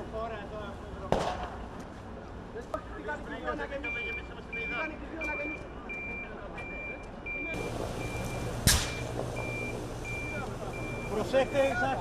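A vehicle's reversing alarm beeping steadily, a single high tone about one and a half beeps a second, starting about four seconds in, over background voices. A low rumble and hiss come in about halfway through, and a loud sharp bang sounds near nine seconds in.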